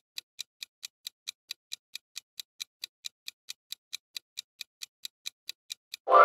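Countdown-timer clock ticking sound effect: fast, even ticks, about four to five a second, marking the seconds running out to answer a riddle.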